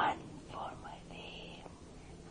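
Soft, whispered voices, with a short vocal sound at the start and a hissy whisper about a second in.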